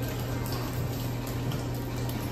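A steady low hum under an even rushing background noise, with no clear strokes or changes.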